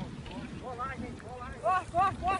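A person's short, high-pitched cries in quick runs, about four a second, over wind buffeting the microphone.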